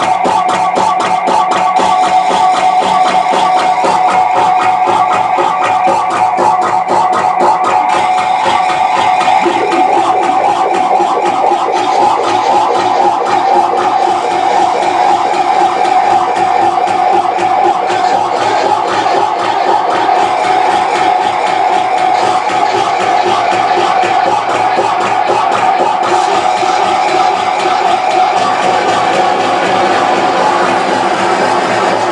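Live harsh noise from electronic gear: a loud, unbroken wall of noise with a held whining tone in the middle and a fast, stuttering crackle throughout.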